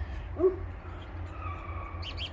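Birds calling faintly in trees, with one short low 'ooh' note about half a second in and a thin whistled note later, over a steady low rumble.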